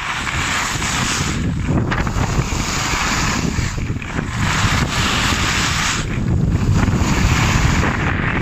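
Wind rushing over the microphone of a camera carried by a moving skier, with the hiss of skis scraping over groomed piste snow; the hiss eases briefly about every two seconds as the skier links turns.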